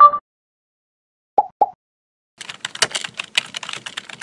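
Short electronic pops, one at the start and a quick pair about a second and a half in, then rapid computer-keyboard typing clicks from about two and a half seconds on: an outro sound effect for text being typed into a search bar.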